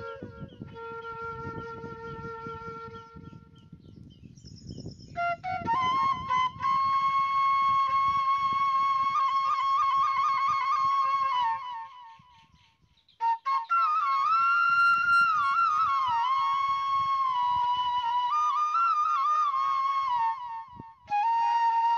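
Flute melody as background music: long held notes with wavering, ornamented turns. It drops out briefly about twelve seconds in, then resumes.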